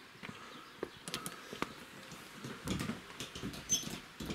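Scattered light clicks and knocks of footsteps and a plastic strip curtain brushing past as someone walks through a doorway into a small wooden hut.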